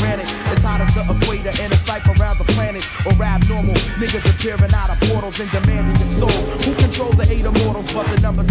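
Hip hop track playing through the DJ mixer: rap vocals over a steady beat with heavy bass.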